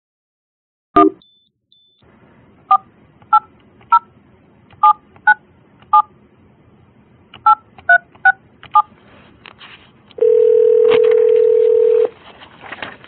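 Office desk phone being dialed: a click about a second in, then ten keypad tones, each a short two-note beep, as a number is punched in. Near the end a loud steady ringback tone comes over the line as the call rings through.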